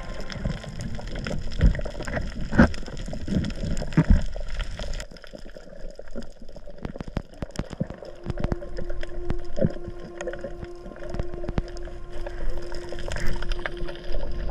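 Underwater sound of water moving around a camera over a coral reef, with many scattered sharp clicks and crackles and a few louder knocks in the first few seconds. A faint steady hum runs through the second half.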